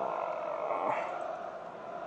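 Steady background noise in a pause between words, an even hum-like hiss from the stream's audio, with a faint short sound about a second in.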